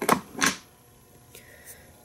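Small scissors snipping through a clump of deer hair: two quick cuts about half a second apart.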